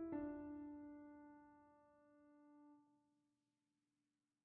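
Background piano music: a chord struck at the start rings on and fades away over about three seconds, then silence.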